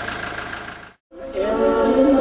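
A van engine idling steadily, fading out about a second in; after a brief silence, music with a singing voice starts.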